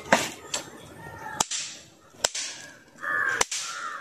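Pop-pop crackers (bang snaps) thrown onto hard ground, going off in several sharp snaps, the loudest three about a second apart.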